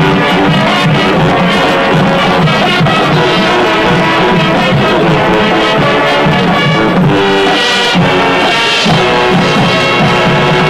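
High school marching band playing, loud and sustained, with brass carrying the tune over a steady beat.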